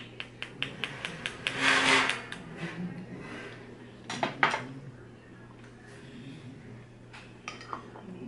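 A spoon clinking and scraping in a jar of banana baby food: a quick run of light taps, then a louder scrape about two seconds in and another about four seconds in, with a few more clinks near the end.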